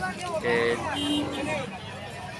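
Men's voices calling out in the background over traffic noise, a few short pitched calls rising and falling.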